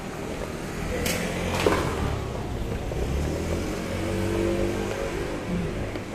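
A motor vehicle's engine running close by and picking up speed, its pitch rising near the end. Two sharp clicks come about a second in and a moment later.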